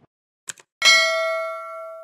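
Subscribe-button animation sound effect: a quick double mouse click, then a bright bell-like ding that rings on and slowly fades.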